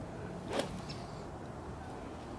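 A single sharp click about half a second in, over steady low outdoor background noise.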